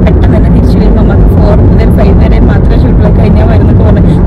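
Car cabin noise while driving: a loud, steady low rumble of road and engine, with a voice faintly over it.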